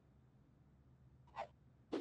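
Cartoon cracking sound effect: a faint short crack a little past halfway, then a loud sharp crack at the very end, as cracks split across the snowy ground.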